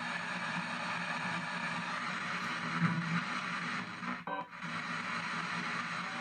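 P-SB7 spirit box radio sweeping through stations: a steady hiss of static laced with brief chopped fragments of radio audio, with a short dropout a little past four seconds in.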